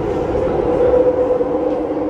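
Downtown Line metro train running, heard from inside the car: a steady motor whine in two tones over the rumble of the car.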